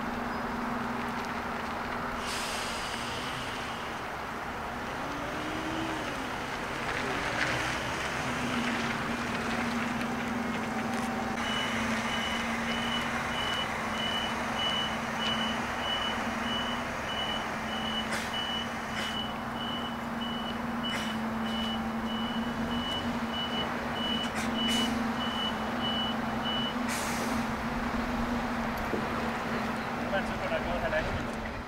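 A bus's engine running steadily. About a third of the way in, its reversing alarm starts beeping at an even pace, about two beeps a second, as the bus backs up. The alarm stops a few seconds before the end. A few short clicks fall in the second half.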